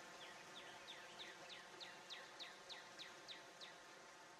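A bird calling faintly: a run of about a dozen short notes, each sliding downward, about three a second, growing a little louder toward the middle and stopping shortly before the end, over a faint steady hiss.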